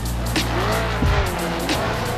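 Drift car engine revving, its pitch dipping and rising, with tyre squeal, over background music with a steady beat.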